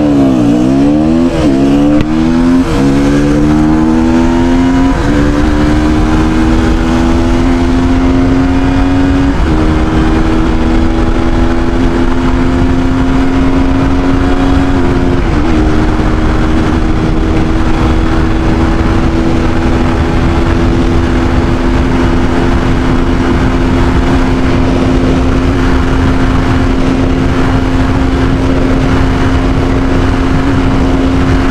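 KTM Duke 200's single-cylinder engine, remapped with a Powertronic ECU, accelerating at full throttle through the gears. The engine note climbs in pitch and drops at each upshift, about 3, 5, 9 and 15 seconds in, with each gear pulling more slowly. It then holds a steady high drone in top gear at around 136 km/h, running past where the stock speed limiter would cut in.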